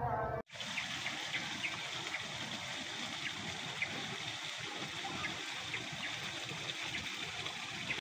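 A voice is cut off abruptly about half a second in. It is followed by a steady trickle of running water, with short high chirps scattered through it.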